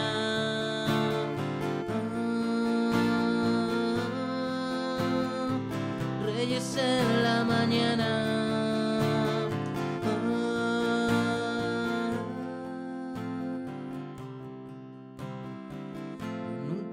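Acoustic guitar strummed, chord after chord, with a man's voice singing at times; the playing grows softer near the end.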